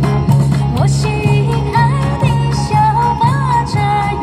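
Pop backing track played through a small portable PA speaker: a steady bouncing beat about twice a second under a lead melody line.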